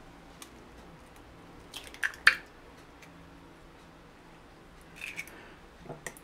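An egg tapped and cracked against the rim of a glass jug: a couple of light taps and one sharp crack about two seconds in, then a softer click near the end, over quiet room tone.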